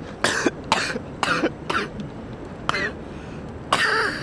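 A man coughing and puffing in about six short, breathy bursts, out of breath from exercise.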